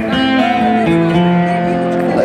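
A live band playing a song in a large concert hall, guitars to the fore with voices over them, as picked up from among the audience.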